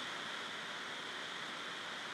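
Steady faint hiss of background noise, room tone with no distinct events.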